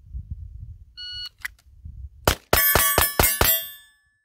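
Shot-timer start beep. About a second later, a Smith & Wesson M&P 2.0 Metal pistol fires a rapid string of five shots, roughly a quarter second apart. Steel targets ring with each hit and the ringing dies away after the last shot.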